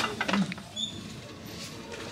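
Handling noise: a sharp click, then a few lighter clicks and knocks in the first half second as goods and a plastic shopping basket are moved, followed by quiet store room tone.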